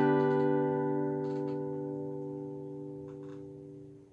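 The final strummed chord of an acoustic guitar with a capo ringing out and slowly dying away, with a few faint taps along the way.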